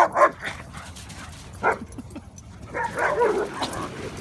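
Dog barking while playing: a short bark a little under two seconds in, then a longer stretch of barking around three seconds in.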